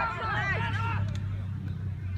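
Voices shouting across a rugby field, several overlapping and fainter than the nearby sideline voices, over a steady low hum.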